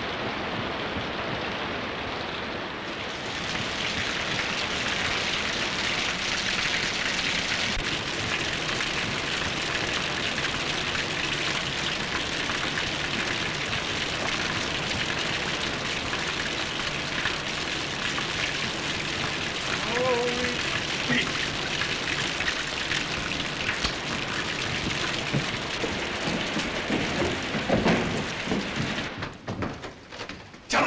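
Heavy rain falling steadily, with water spilling from a downspout into a rain barrel. A few knocks near the end.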